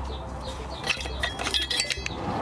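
Light metallic clinks and taps of metal parts being handled: a few scattered near the middle, a cluster near the end, some ringing briefly. A low steady hum runs beneath.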